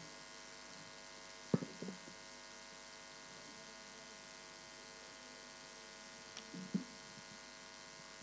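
Steady electrical buzz with many even overtones, like mains hum through a sound system, with a single short knock about one and a half seconds in and a faint brief sound near the end.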